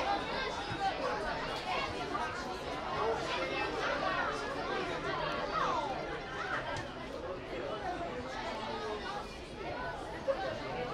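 Many overlapping voices chattering and calling out at once, with no single voice clear, at a steady level.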